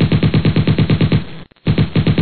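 Machine-gun fire sound effect: a rapid string of shots, about eleven a second, breaking off briefly about one and a half seconds in and then resuming.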